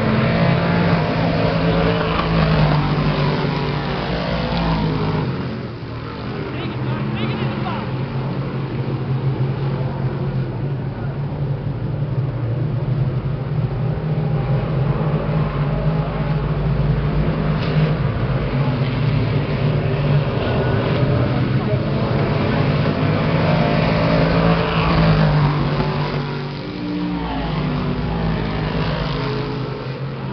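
A field of dirt-track race cars running laps on a dirt oval, their engines blending into a steady drone that swells as cars pass close by. It dips briefly about six seconds in and again near the end.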